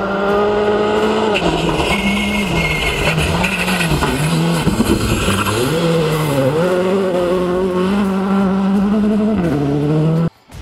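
Škoda Fabia R5-class rally car's turbocharged four-cylinder engine driven hard on a gravel stage. The revs dip and climb again several times as it shifts and lifts through the corners, with gravel spraying under the tyres around the middle, then hold high before a last drop near the end.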